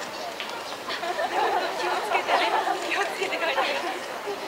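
Indistinct chatter of several voices talking quietly at close range.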